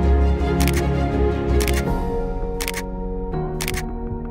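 Camera shutter clicks four times, about a second apart, each a quick double click, over background music with held notes and a steady bass.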